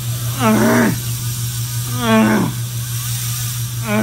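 Zipp 303 Firecrest rear hub freewheeling as the wheel spins, its pawls giving a steady low buzz. Three short voice-like whoops, each rising then falling in pitch, come over it at about half a second, two seconds and four seconds in.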